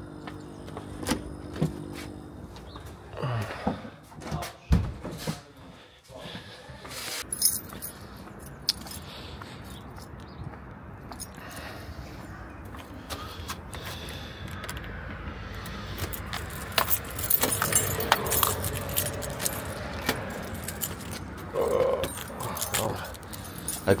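A bunch of keys jangling and clinking as they are carried and used to unlock a door, the densest jingling coming about three-quarters of the way through. Steady street traffic sounds underneath.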